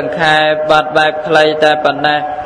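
A Buddhist monk's voice chanting in a sing-song recitation, short phrases sung on level held notes that step between pitches.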